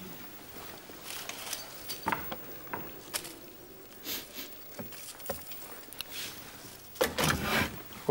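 Hot water poured from a jug into a roasting pan around a ham roast, amid light clicks and knocks of kitchen handling, with a louder burst of handling noise about a second before the end.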